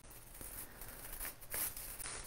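Faint rustling and soft tearing of a scaevola plant's root ball and foliage being pulled apart by hand, with a few small irregular crackles.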